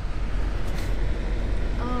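Steady low rumble of a moving car, heard from inside the cabin. A voice starts near the end.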